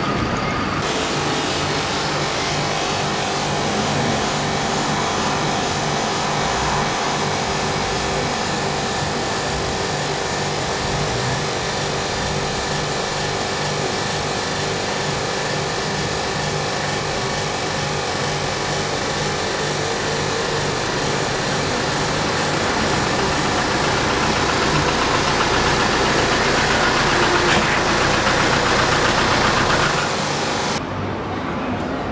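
Steady engine-like hum under an even hiss, unchanging throughout, growing slightly louder near the end and cutting off abruptly.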